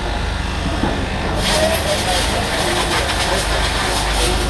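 Steady low hum with background voices. About a second and a half in, a loud steady hiss of compressed air starts, from the pneumatic air lines used on the car.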